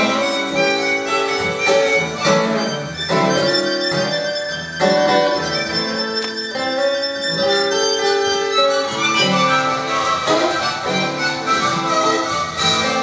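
Blues harmonica solo played cupped in the hands close to a microphone, long held notes over acoustic guitar accompaniment.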